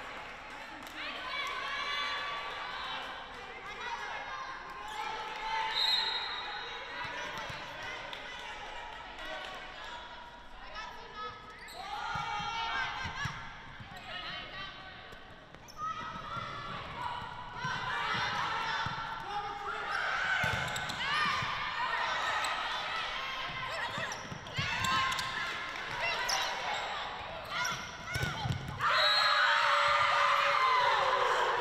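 Volleyball rally in a large gym: the ball is struck several times with dull thuds while players shout calls to each other. Near the end comes a louder burst of shouting and cheering as the point is won.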